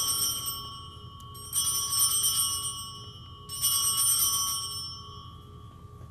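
Altar bells rung three times, about two seconds apart, each ring a bright jingle of several tones that fades out. This marks the elevation of the chalice at the consecration.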